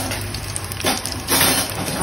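Chopped green garlic sizzling and crackling in hot olive oil in a frying pan, being softened slowly over moderate heat, with louder spells of crackling about a second in and again around a second and a half.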